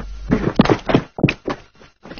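A quick series of dull thuds, about six in the space of a second and a half, growing fainter.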